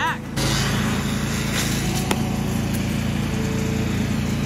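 A small engine running steadily as a low drone, with a single sharp click about two seconds in.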